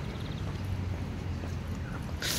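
Steady low rumble of wind on a handheld phone's microphone while walking outdoors.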